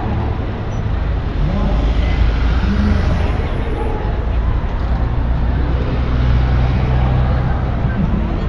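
Busy city-street traffic: cars and buses running past, with a bus engine close by holding a steady low hum through the second half, over the voices of a crowd of passers-by.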